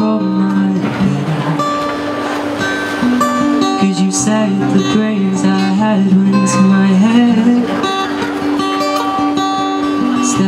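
Acoustic guitar strummed with a male voice singing a song over it, in long held notes.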